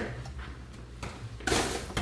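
Boxing gloves striking handheld focus mitts: a few soft slaps, then a louder hit about one and a half seconds in.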